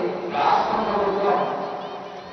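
A person crying out in a drawn-out, wavering shout over crowd noise, starting a moment in and easing off near the end.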